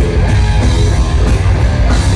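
Death metal band playing live and amplified: distorted electric guitar, electric bass and drum kit together, loud and dense with a heavy low end.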